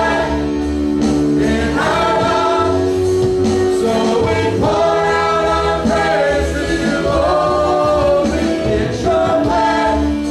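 Choir singing a gospel worship song over instrumental accompaniment, holding long sustained notes.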